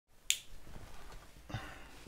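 A single sharp finger snap, followed by quiet room tone.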